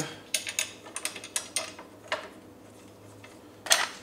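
Several light metallic clicks and taps as steel screws are handled and set into the holes of a power wheelchair's metal seat frame, then a short rustle near the end.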